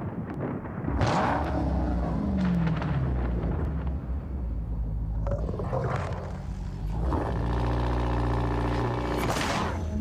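Deep rumble of a Dodge Challenger SRT Demon's supercharged V8, with a falling pitch about two seconds in and a held, steady engine note from about seven seconds. Near the end it gives way to a rising rush of noise.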